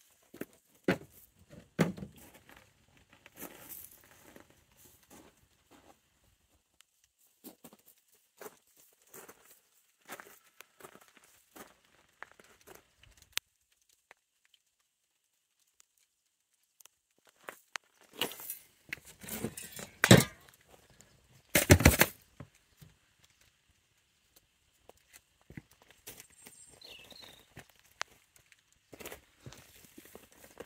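Rustling and handling noise with scattered clicks and soft footsteps while moving around with the camera, with a few louder bumps about twenty seconds in.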